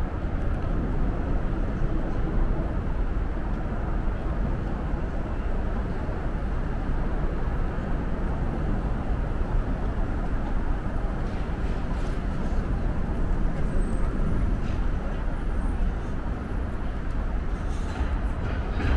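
Steady traffic rumble from vehicles on the elevated motorway overhead, a continuous heavy low-end drone with no single vehicle standing out.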